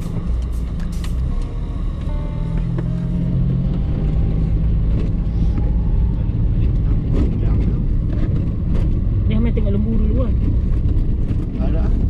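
Car engine running and road rumble heard inside the cabin as the car moves off, the low rumble growing louder a few seconds in. A few sharp clicks near the start.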